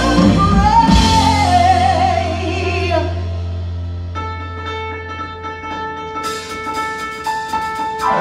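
Live rock band with a female lead singer, who holds a long note that slides down and fades out about three seconds in. The band then holds a quieter sustained chord over a steady bass note, and a run of quick drum and cymbal hits joins near the end.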